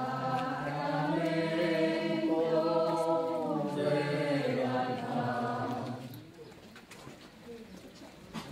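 A group of voices singing a slow procession hymn in long, held notes, stopping about six seconds in.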